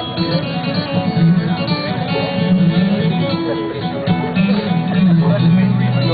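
Acoustic guitar strummed and picked, its notes ringing steadily.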